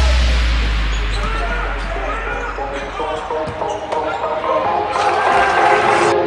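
Electronic bass music fades out, leaving the live sound of a basketball game in a gym: a ball being dribbled on the hardwood, with voices of players and spectators. The crowd noise grows louder near the end.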